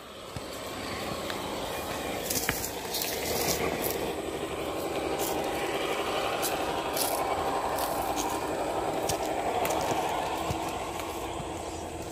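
Electric motor and geared drivetrain of an RC rock crawler whining steadily under load as it climbs a rock slab, with scattered sharp clicks and scrapes of tyres on rock. The drive noise swells over the first couple of seconds and settles into a lower steady whine near the end.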